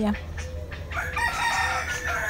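A bird's long call, starting about a second in and held for about a second.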